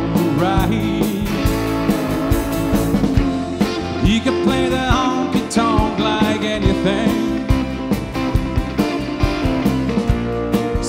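Live rock band playing an instrumental stretch: electric lead guitar fills with bent notes over acoustic rhythm guitar, electric bass, keyboard and a steady drum beat.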